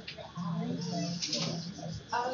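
Quiet, indistinct speech: voices talking too low to make out.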